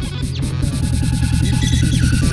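Beatbox loopstation performance: layered, looped vocal sounds forming an electronic dance beat, with a steady deep bass, a fast repeating figure above it and hissing hi-hat-like sounds on top, slowly building in loudness.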